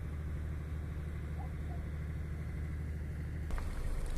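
A vehicle engine idling, a steady low hum. About three and a half seconds in, the sound changes abruptly to a different, noisier background.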